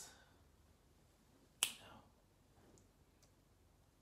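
A single sharp finger snap about one and a half seconds in, against quiet room tone, followed by two faint ticks.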